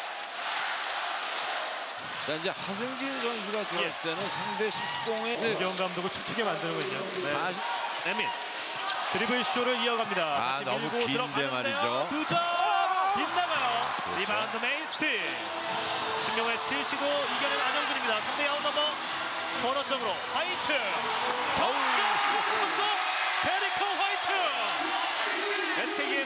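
Arena sound of a live basketball game: a basketball bouncing on the hardwood court and sneakers squeaking, under continuous crowd and voice noise in the hall.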